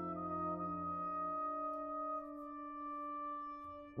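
Brass quintet of two trumpets, horn, trombone and tuba holding sustained chords. The lowest voice drops out about a second in, while the upper voices hold on and grow softer toward the end.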